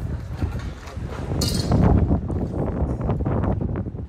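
Wind buffeting the microphone outdoors, with irregular knocks and crunches like footsteps on rubble and a short hiss about a second and a half in.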